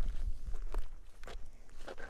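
Footsteps through dry grass and sagebrush, a step roughly every half second.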